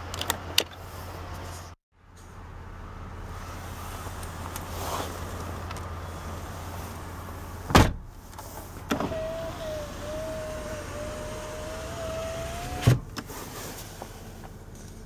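Power window motor in a 2009 Chevrolet Impala door running with a steady whine for about four seconds, ending in a thump as the glass stops. A few clicks come at the start, and a loud thump comes a second before the motor starts.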